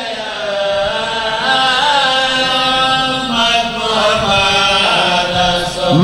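A man's voice chanting through a microphone in long, sustained melodic phrases: the sung style of a zakir's majlis recitation.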